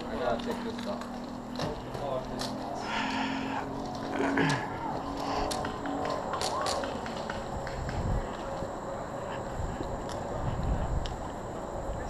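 Indistinct voices of people nearby, with scattered sharp clicks and rustling as the wearer moves across the ground.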